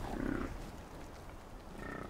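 A single faint, low grunt from a bison, about a quarter second in, over quiet outdoor ambience.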